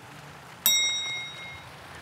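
A single bright bell ding about two-thirds of a second in, ringing out and fading over about a second. It is typical of an edited sound effect accompanying the score update.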